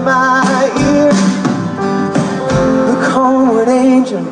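A live rock band playing a song, with strummed acoustic guitar, drums and organ.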